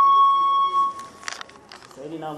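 Microphone feedback through a public-address system: a loud, steady whistle that cuts off about a second in. A brief rustle of microphone handling follows.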